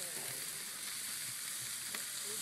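Chicken skewers, sausages and steaks sizzling on a grill grate: a steady hiss.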